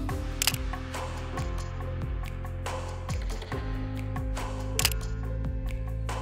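Sony ZV-E10 mirrorless camera's shutter firing twice, about four seconds apart, over steady background music.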